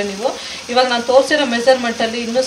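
Grated raw mango sizzling in a nonstick pan as it is stirred with a wooden spatula, under a voice talking, which is the loudest sound.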